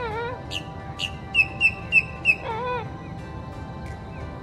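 Red-bellied woodpecker calling: a run of four sharp, quick call notes about a second and a half in, with wavering calls before and after, over background music with sustained notes.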